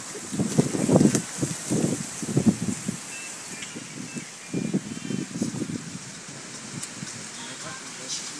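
A person's voice, low and indistinct, in short irregular bursts through the first three seconds and again around five seconds in, over a steady background hiss.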